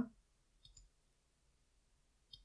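Faint computer mouse clicks, two in quick succession about two-thirds of a second in, switching the visible layer; otherwise near silence.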